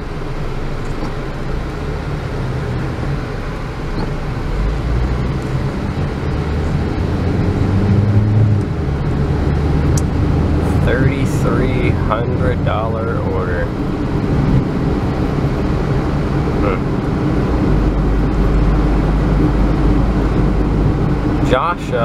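Car cabin noise while driving: a steady low engine and road rumble that grows a little louder as the car pulls away from a stop and picks up speed.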